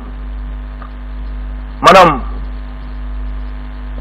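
Steady low electrical mains hum with faint steady overtones, picked up through the microphone's sound system. A man says one short word about two seconds in.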